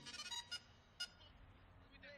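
Faint electronic tones, with two short clicks about half a second and a second in.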